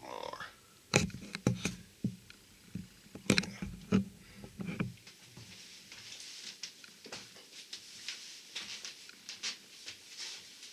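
Handling and movement noises close to the microphone: a few sharp knocks in the first half, then faint rustling.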